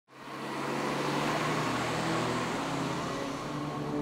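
Road traffic noise: a steady wash of car sound, fading in over the first half second.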